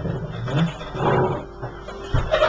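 A man's voice speaking into a microphone through a low-quality, muffled sound system.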